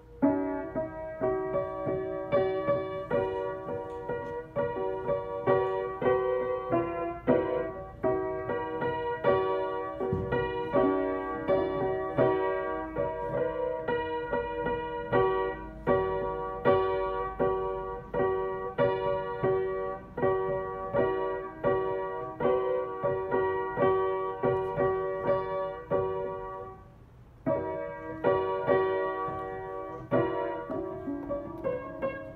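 Upright piano played by a young child improvising a tune of her own: single notes and small clusters struck one after another in a steady flow, with a brief pause near the end before she carries on.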